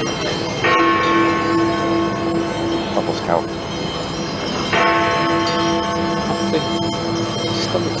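Big Ben, the great hour bell in the Elizabeth Tower, struck twice about four seconds apart; each stroke rings on with a long, slowly fading hum.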